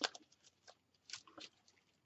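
Faint, scattered light clicks and crinkles of hands handling and pressing a layered flower embellishment onto a decorated cardboard jigsaw puzzle piece, with one sharper click at the start.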